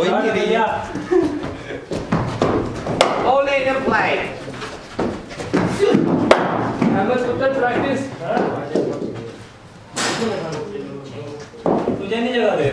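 Men talking in a reverberant indoor net, with two sharp knocks of a hard cricket ball, about three seconds in and about six seconds in.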